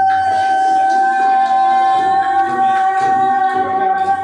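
A woman singing one long high note held steady, over a live-looped backing of layered voices.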